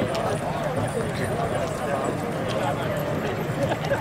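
Indistinct chatter of many people talking at once, with no single clear voice and no pauses.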